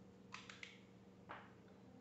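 Faint clicks of the screw cap being twisted off a small glass bottle: three quick clicks close together, then one more about a second later.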